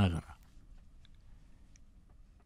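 The last syllables of a man's spoken Japanese narration, then a quiet pause holding only a couple of faint small clicks.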